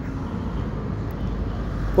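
Steady low rumble of outdoor background noise with no clear pitch, swelling slightly near the end.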